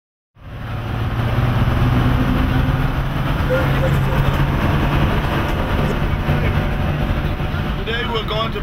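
A bus engine and road noise heard from inside the cabin while driving, fading in just after the start and then holding as a steady low drone.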